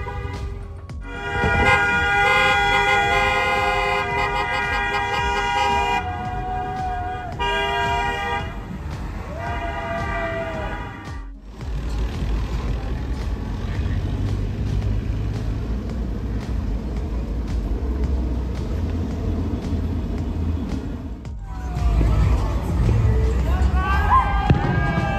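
Celebratory car horns honking in long held blasts, several at once, over the first part; then the low rumble of car engines in slow street traffic, with people whooping and shouting near the end.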